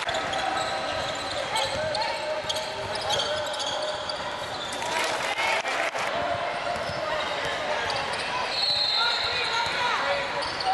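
Live game sound from a basketball game on a hardwood gym floor: a ball bouncing, shoes squeaking in short chirps, and indistinct players' voices.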